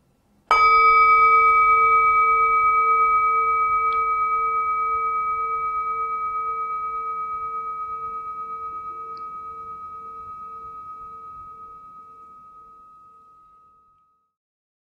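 A metal singing bowl struck once with a mallet about half a second in, ringing with a few clear tones that fade slowly over about thirteen seconds, the lowest tone pulsing as it dies away. It is rung as the signal to enter silent meditation.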